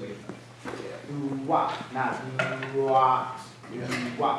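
Talking in the room, with a few light clicks and knocks.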